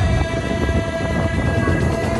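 A long, steady horn-like tone with several pitches sounding together, held for about two seconds over a low rumble.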